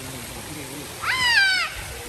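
A single high-pitched cry about a second in, rising sharply and then falling away over roughly half a second.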